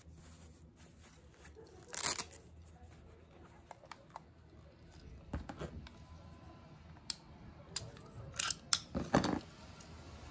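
Handling noises on a tabletop: a short swish of satin cloth being rustled about two seconds in, then scattered light clicks and knocks as a hard plastic toy piece is handled, with a cluster of louder rustles and taps near the end.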